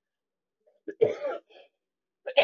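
A person coughing into the crook of her elbow, one sharp cough about a second in and a smaller one right after, from a lingering cold that she says is slowly going away.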